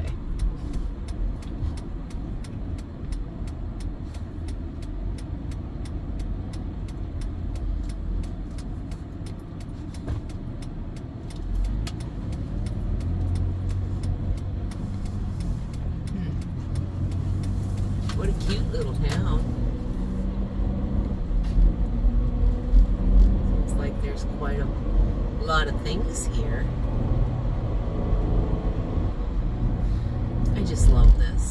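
Minivan driving along a road, heard from inside the cabin: steady engine and road rumble that grows louder about halfway through as the van picks up speed. A few short higher-pitched sounds come in later on.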